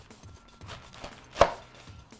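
Kitchen knife cutting the top off a pomegranate, with quiet cutting and then one sharp knock about one and a half seconds in as the blade comes through the fruit onto the cutting board.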